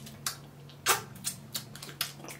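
Plastic dipping-sauce cup being pried at and its stiff peel-off lid worked open, giving several short crackles and clicks, the loudest about a second in.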